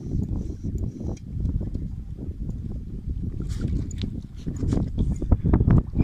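Wind buffeting the microphone on a boat at sea: an uneven, gusting low rumble, with a few faint clicks.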